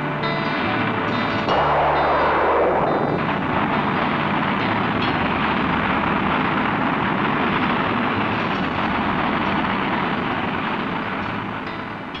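Rocket engine roar at liftoff: a dense, steady rush of noise that swells strongly about a second and a half in and slowly eases off toward the end.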